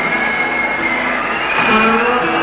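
Live band music at a rock concert: a chord of sustained, held notes that shifts to new pitches in steps.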